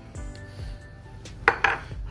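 Two sharp clinks of a small ceramic ramekin being handled and set down, about a second and a half in, over quiet background music.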